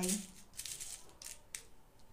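Sequin fabric rustling with a faint rattle of sequins as it is handled and laid out, most active in the first second and a half.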